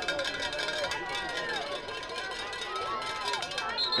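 Indistinct voices from around a youth football field, several people calling out over one another with no clear words.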